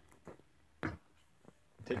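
A single short knock about a second in, with a few fainter ticks, in an otherwise quiet small room.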